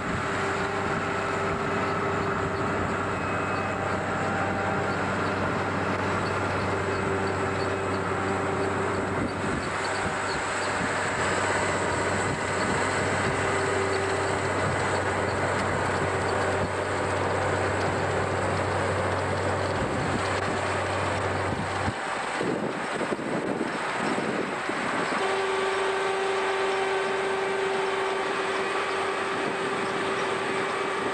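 Self-propelled sugar beet harvester running while lifting beet, a steady loud machine drone with a held whining tone. The deepest part of the drone drops away about two thirds of the way through.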